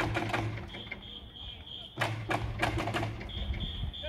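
Baseball cheering section: an electronic whistle holds a steady high tone for about a second, then taiko drum beats and fans' chanting come in about two seconds in, and the whistle tone returns near the end. It is the call-and-response rhythm of an organised cheer.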